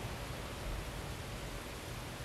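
Steady outdoor background hiss with a low, uneven rumble beneath it, and no single sound standing out.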